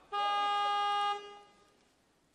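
Electronic buzzer of a weightlifting competition's timing system, sounding one steady, flat note for about a second in a large hall, cutting off abruptly with a brief fading tail.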